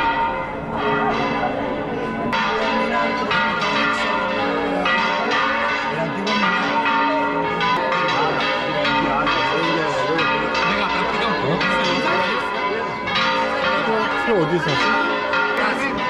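Church bells ringing in a continuous peal, many bells struck again and again so that their tones overlap and sustain, with a crowd's chatter underneath.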